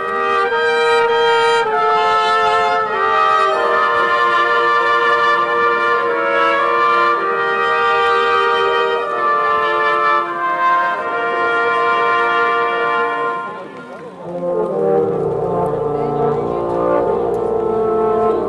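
Czech brass band playing, the trumpets carrying a melody of held notes. After a short dip in level just past the middle, the lower brass (tenor horns and baritones) take the tune in a lower register.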